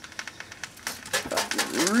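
A cordless drill burning inside a microwave, crackling and popping with rapid irregular clicks as its plastic burns.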